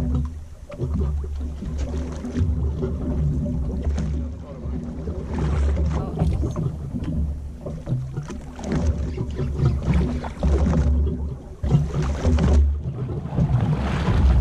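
Open-air sound aboard a small boat at sea: wind rumbling on the microphone, rising and falling, over the wash of the water, with faint voices.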